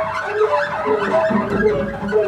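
Free-improvised experimental music from voice, clarinet, saxophone and two double basses: several held, wavering tones slide up and down in pitch over one another. A low bowed double bass note comes in about one and a half seconds in.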